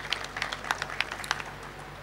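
A pause in the speech filled with scattered, irregular faint clicks and taps over a steady low hum.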